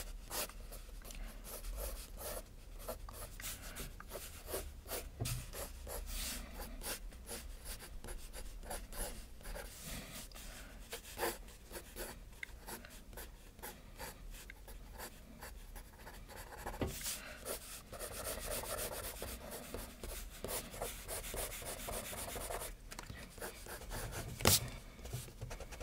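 Graphite pencil scratching on sketchpad paper in many short, quick strokes, with a longer run of denser, continuous scratching near the end.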